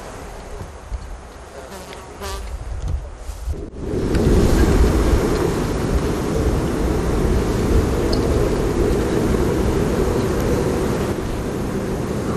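A steady, dense buzzing drone with a low rumble beneath it. It jumps abruptly louder about four seconds in and then holds steady.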